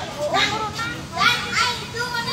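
High-pitched voices calling and chattering, with no clear words, in bursts over a steady background murmur.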